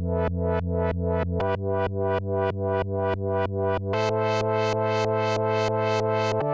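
Korg Mono/Poly four-VCO analog synthesizer being played: a pulsing run of notes about three a second over held pitches. The harmony shifts about a second and a half in and again near four seconds, where the tone turns noticeably brighter.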